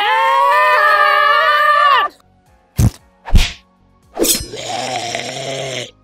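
A high-pitched cartoon voice holds a long yell for about two seconds, then two sharp whacks half a second apart, then a noisy hissing effect lasting under two seconds.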